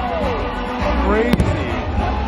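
Spooky show music over loudspeakers, with wailing tones that slide down and then climb back up, and a single sharp firework bang just over a second in.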